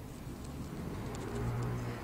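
Quiet low hum with faint soft clicks and pats of hands pressing and shaping a minced beef-and-tofu patty between the palms.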